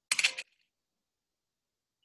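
A brief clatter of rapid, sharp clicks lasting about a third of a second, just after the start.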